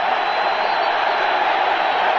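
Steady stadium crowd noise from a large football crowd, an even wash of many voices with no single shout standing out.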